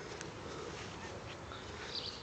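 A dog gnawing a stick, with faint whimpering.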